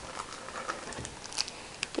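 Faint handling noise: light rustling and a few small ticks as wax melts in plastic bags are picked out of a cardboard gift box.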